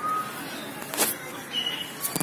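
Outdoor park ambience: a steady background hiss with a couple of short bird chirps, and one sharp click about a second in.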